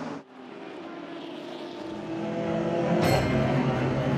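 Race car engines running at speed, their sound growing steadily louder, with a sudden jump to a louder, harsher engine sound about three seconds in.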